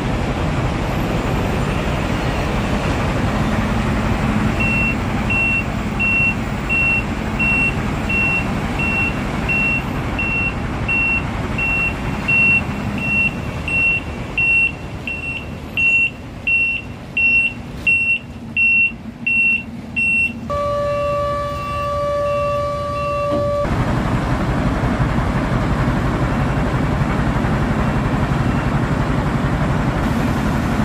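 Heavy dump truck engine running, with its reversing alarm beeping about twice a second as it backs up to tip iron ore into the grizzly feeder. The beeping grows louder, then gives way to a horn sounding for about three seconds, and the engine carries on running.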